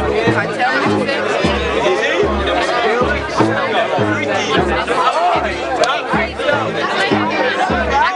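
Jersey club dance music with a repeating bass kick, played loud under the steady chatter of a surrounding crowd.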